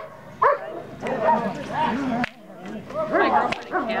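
A Dobermann barking at a protection helper in a hold-and-bark exercise, with one sharp bark about half a second in. People talk over it for the rest of the time.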